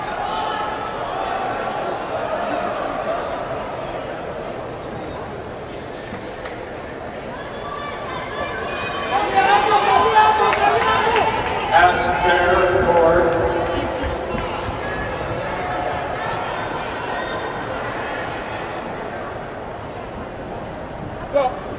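Indoor crowd of spectators and coaches calling out and cheering as the race pack runs past. The shouting swells to its loudest about halfway through, over a steady background of crowd voices echoing in the hall.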